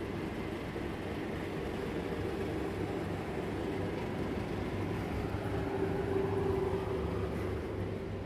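Steady hum and rumble of supermarket indoor ambience, with a faint held tone that grows a little stronger about six seconds in.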